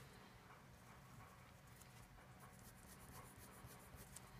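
Faint scratching of a pen on paper in quick, repeated short strokes as diagonal hatching is drawn.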